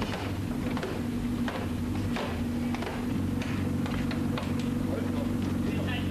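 A 5-kilo sledgehammer repeatedly striking a rally car's dented body panels, beating out crash damage in an emergency repair, roughly one blow every half second to second. A steady low machine hum runs beneath from about halfway through.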